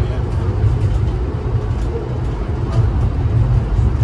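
Steady low rumble and running noise of an Amtrak passenger train moving at speed, heard from inside the passenger car.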